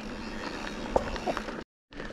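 Mountain bike rolling along a gravel forest track: steady tyre-on-gravel noise with a couple of sharp clicks from the bike about a second in. The sound then cuts to total silence for a moment near the end.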